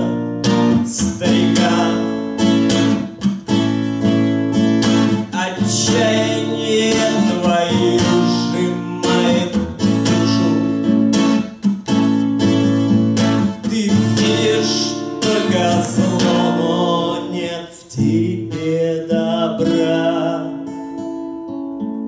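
Steel-string acoustic guitar strummed in steady chords, with a man singing over it; it grows softer near the end.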